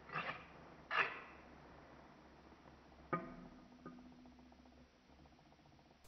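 Scissors snipping twice, about a second apart, as they cut a thin string of polyethylene oxide slime. Each snip is sharp with a brief ring. About three seconds in comes a single pitched note that rings on for about a second and a half.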